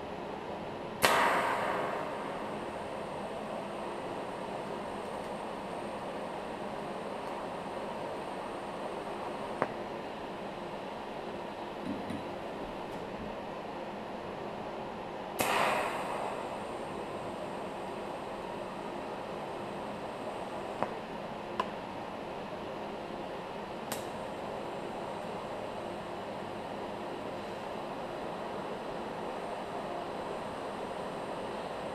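Electric arc welding on a car's front suspension A-arm: a steady hiss from the arc, with a sharp loud crack about a second in and again about halfway through, each fading over about a second.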